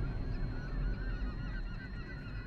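A flock of birds calling: many short, overlapping calls over a low rumble.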